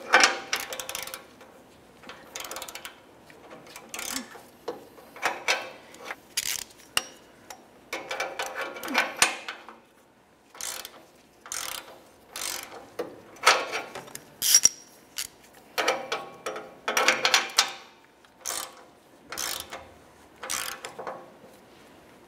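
A 3/8-inch drive ratchet clicking in short, irregular bursts of strokes, about one a second. It is turning an O2 sensor socket to tighten a new downstream oxygen sensor into the exhaust pipe.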